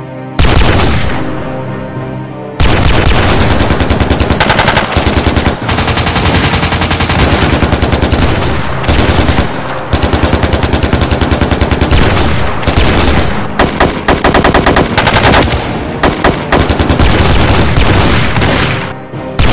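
Action-film gunfight sound effects: a single loud bang about half a second in that rings out and fades over about two seconds, then long bursts of rapid automatic gunfire with short pauses between them.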